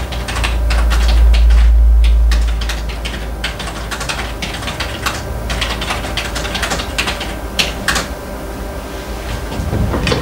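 Computer keyboard being typed on: irregular key clicks throughout. A loud low rumble swells over the first two and a half seconds or so.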